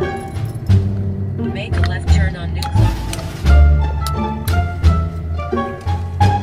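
Background music of short plucked notes over a heavy bass line, with a voice heard briefly about a third of the way in.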